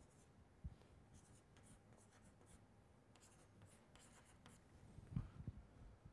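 Chalk writing on a blackboard, faint: short scratchy strokes in two clusters, with a couple of low thumps near the end.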